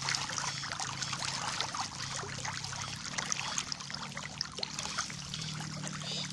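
A dense crowd of Nile tilapia splashing at the surface as they feed on floating pellets, a continuous busy patter of many small splashes. A faint steady low hum runs underneath.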